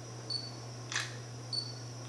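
Digital camera taking photos: a short high focus-confirmation beep, a shutter click about two-thirds of a second later, then a second beep near the end.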